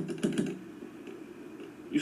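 A quick run of clicks and taps in the first half second, from a phone being handled against a door peephole. A faint low hum follows.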